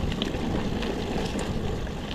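Mongoose Ledge X1 full-suspension mountain bike rolling downhill over a leaf-covered dirt trail. Steady tyre and trail rumble mixed with wind noise, with a few light clicks and rattles from the bike.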